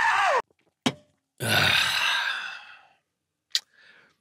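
A long, breathy human sigh lasting about a second and a half and fading away, with a short click just before it and another after it.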